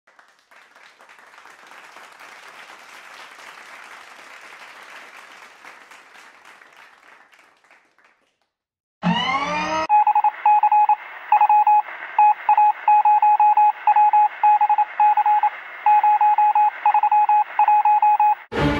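Faint scratching of a marker writing on a sticky note for about eight seconds. After a short pause comes a quick rising electronic sweep, then loud electronic beeps at a single pitch that switch on and off in an uneven pattern.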